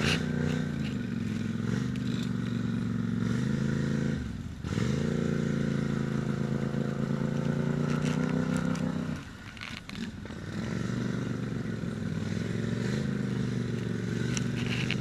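ATV engine running under load as the quad crawls through deep mud and water, its revs wavering slightly. The engine note drops off briefly about four seconds in, and again for about a second near ten seconds in, then picks back up.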